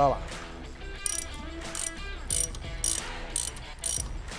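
A 10 mm ratcheting wrench clicking in about six short back-and-forth runs as it unscrews the bolt holding the brake hose bracket to the front shock absorber.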